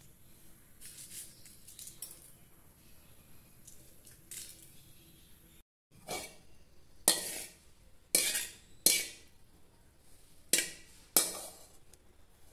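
A steel ladle clinking against a metal cooking pan, about six sharp knocks in the second half, each ringing briefly. Before them there are only a few faint clicks.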